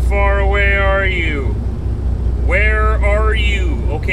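A voice making two long, drawn-out sounds with slowly sliding pitch, like musing or humming, over the steady low drone of an idling truck engine.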